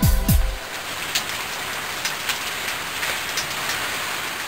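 Steady rain with a few separate drops ticking now and then. The last sung note of a children's song dies away about half a second in.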